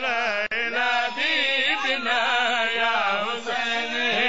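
A man's voice chanting a majlis recitation in a long, ornamented melodic line, the pitch wavering and sliding continuously, with a brief break about half a second in.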